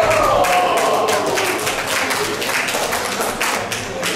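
The tail of a song fades out in the first second, then a run of irregular taps and knocks follows, a few each second.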